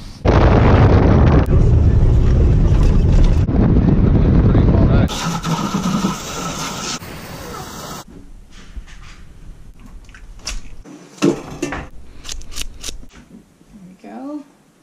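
Loud wind buffeting the microphone on an open beach, a heavy rushing roar for about the first five seconds. From about eight seconds in come quieter scattered clicks and knocks of handling at a stainless-steel kitchen sink.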